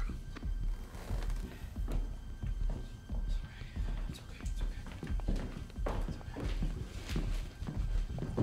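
Tense film score with a deep, pulsing bass, over hurried footsteps and soft knocks of people moving through a house.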